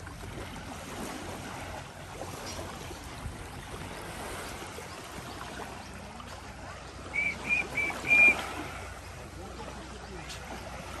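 Small waves lapping gently on a sandy shore. About seven seconds in, four short high-pitched chirps come in quick succession, the last a little longer and the loudest.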